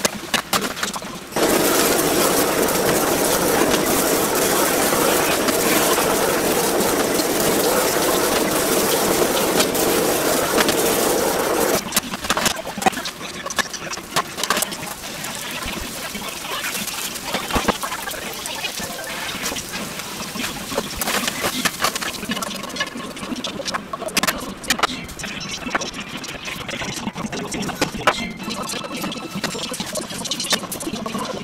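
Yakisoba noodles and pork sizzling in a hot frying pan as they are stir-fried. The sizzling is loud for about the first ten seconds, then softer, with frequent clicks and scrapes of the utensil against the pan.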